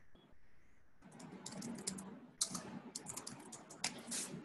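Typing on a computer keyboard: quick runs of key clicks starting about a second in, with a sharper keystroke near the middle.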